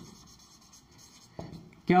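Marker pen writing on a whiteboard: faint scratchy strokes, with a short click about one and a half seconds in.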